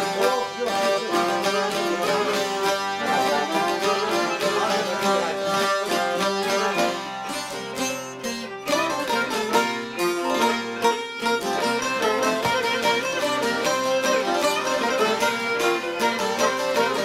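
Albanian folk ensemble playing an instrumental tune on long-necked plucked lutes (çifteli and sharki) with a violin, running steadily throughout.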